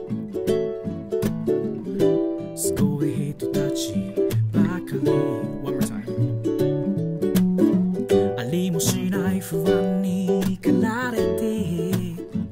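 Solo ukulele playing a chord-based instrumental passage of a song, with a man's singing voice coming back in near the end.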